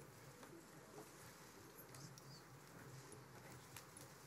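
Near silence: faint room tone of a large hall, with a few faint scattered clicks and shuffles.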